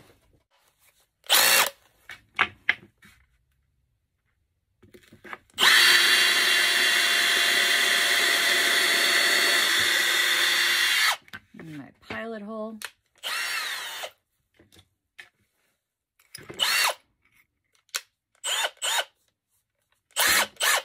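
Cordless brushless drill running steadily for about five seconds, from about six seconds in, drilling a hole into a wooden plate. A few short clicks and knocks come before and after the run.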